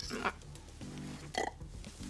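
Quiet background music holding a steady low chord, with two brief throaty mouth sounds from a woman eating snails: one at the start and one about a second and a half in.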